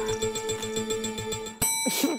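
Game-show style sound effect for the random topic generator: a steady electronic tone over a pulsing beat, then a bright bell-like ding about one and a half seconds in.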